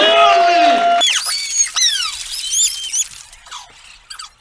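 A held voice-like note that cuts off suddenly about a second in, followed by a run of high-pitched squeaky cries, each rising and then falling in pitch, fading toward the end.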